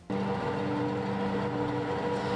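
A steady machine hum with a low, unchanging drone, cutting in abruptly just after the start.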